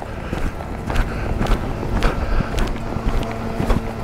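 Horse loping on a sand arena: soft hoofbeat thuds about twice a second, over a low rumble of wind on the microphone.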